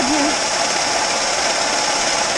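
Grain pouring in a steady stream from a belt-driven auger spout into a trailer bed: a constant hiss over the running auger machinery's hum.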